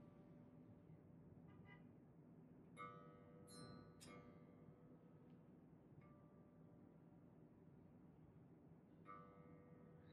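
Electric bass G string plucked faintly a few times, mostly about three to four seconds in, its reference note ringing with a bell-like tone. The string is being retuned during intonation, after its bridge saddle has been moved toward the neck.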